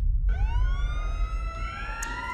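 An emergency-vehicle siren winds up, starting about a third of a second in and rising in pitch before levelling off, over a low rumble.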